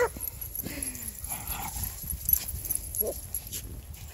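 Small dogs playing and giving a few short yips, one right at the start and another about three seconds in, with a brief falling whine between them, over a low rumble.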